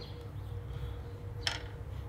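A single light, sharp click about a second and a half in: a metal crown cap set down on a wooden table. A faint steady hum runs underneath until then.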